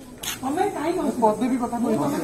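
Speech: a person's voice talking, from about half a second in, with a short click just before it.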